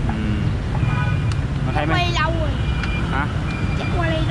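Steady rumble of city street traffic, with brief bits of voices over it, the clearest about halfway through.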